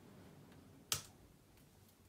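A single sharp click from a MacBook laptop being worked by hand, about a second in, over faint room tone.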